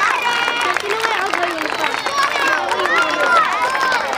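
Many children's high voices chattering and calling out at once, with a brief steady high note just after the start.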